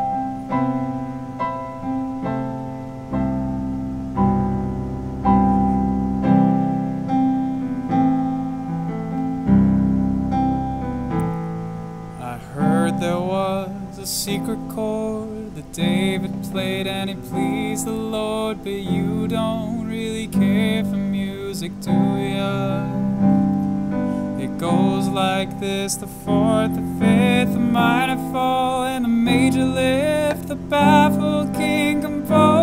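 A Roland digital stage piano plays slow sustained chords as an intro, and about twelve seconds in a man starts singing with vibrato over the piano accompaniment.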